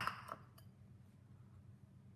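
A brief clink of kitchen dishes at the very start, then a faint, low, steady hum.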